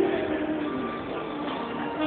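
Live smooth jazz band with keyboards in a softer passage, a held note sounding over the chords before the playing swells again just after.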